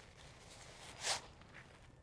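A single short fabric swish about a second in, as a pop-up fabric softbox springs out of its nylon pouch; otherwise near silence.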